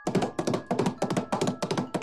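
Rapid string of light taps and thunks, about eight a second, made as a sped-up rush through the ingredients. A faint held music chord sounds underneath.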